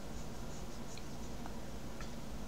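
Plastic stylus of a Wacom Bamboo pen tablet scratching across the tablet surface in a few short, faint strokes while shading a drawing, over a steady low hum.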